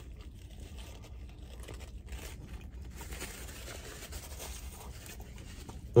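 Close-up chewing of a mouthful of pretzel-bun burger: soft, irregular mouth sounds over a low steady rumble.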